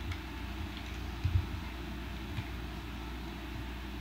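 Quiet handling of a plastic Transformers action figure as a part is flipped into place: a soft low thump a little over a second in and a faint click later, over a steady low hum.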